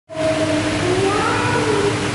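Public aquarium hall ambience: a steady hum and hiss, with faint drawn-out high sounds that glide up and down in pitch.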